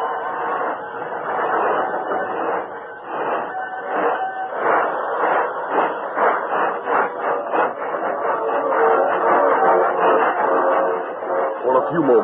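Background music from an old radio drama, played over a steam locomotive sound effect with a rhythmic chuffing running under the music. The recording is narrow-band.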